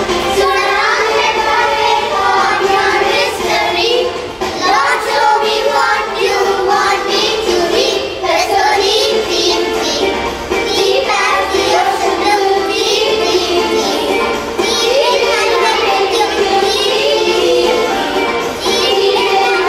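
Children singing a song with instrumental backing.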